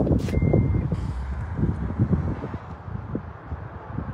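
Power liftgate of a 2024 Cadillac LYRIQ closing, with its warning chime giving one steady high beep about half a second in. Low, uneven rumbling noise runs underneath.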